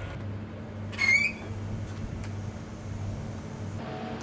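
Steady low machinery hum, with a short high squeaky chirp about a second in. Near the end the hum gives way to a different steady room hum.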